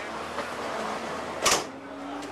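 Steady outdoor street background noise with a faint steady hum, broken about one and a half seconds in by a single short knock.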